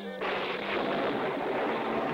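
Cartoon thunder sound effect: a rumble that comes in suddenly just after the start and holds steady, heralding a coming rainstorm.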